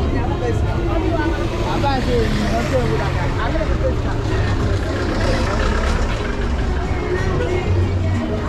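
Busy open-air market street: many voices talking and calling at once, over a steady low hum of vehicle engines in the road.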